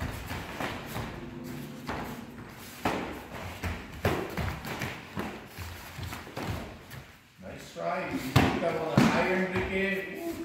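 Taekwondo sparring: kicks and punches landing on padded chest protectors and bare feet striking foam mats, heard as several sharp thuds at irregular intervals. Voices call out in the last two seconds, the loudest part.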